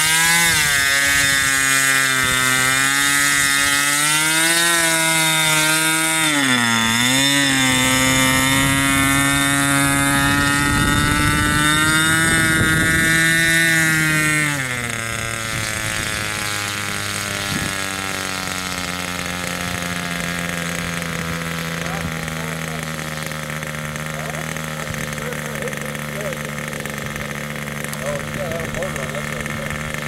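Engine of a 12-foot radio-controlled ultralight model plane running at part throttle while it taxis, its pitch dipping and rising briefly a few seconds in. About halfway through it is throttled back and then idles steadily at a lower pitch.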